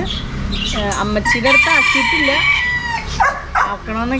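A bird gives one long, high, drawn-out call lasting about a second and a half, starting about a second and a half in and dropping in pitch as it ends, with voices around it.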